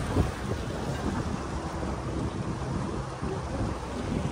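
Wind buffeting the microphone on a moving pontoon boat: an uneven low rumble over the rush of the boat through the water.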